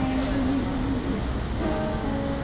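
Music with long held notes that step from one pitch to another, over a steady low rumble of outdoor background noise.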